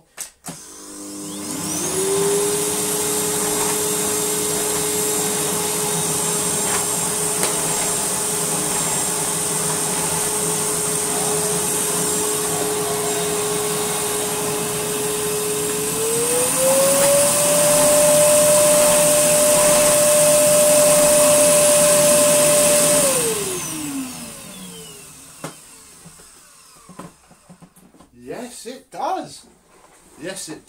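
Hoover Sonix 2100-watt cyclonic cylinder vacuum cleaner switched on and run over a rug: its motor spins up in a second or two to a steady whine with a high whistle above it. A little over halfway through, the whine steps up in pitch and gets louder. Near the end the motor is switched off and winds down in a falling whine.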